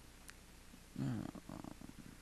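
A man's low, creaky-voiced grunting starts about a second in, after a faint click.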